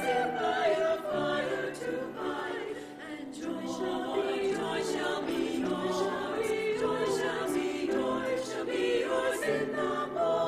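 A small women's choir singing in parts with piano accompaniment, a held melodic line over sustained lower notes, softer for a moment about three seconds in.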